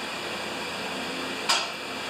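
Steady background hiss of a garage workshop, with a single short click about one and a half seconds in as the carburetor parts are handled.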